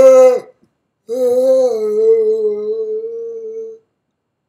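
A man singing unaccompanied: a short, loud sung note, then after a brief pause a long held note of about two and a half seconds, wavering slightly, that stops shortly before the end.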